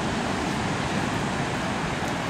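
Ocean surf breaking on the shore, a steady, even rush of noise without separate crashes standing out.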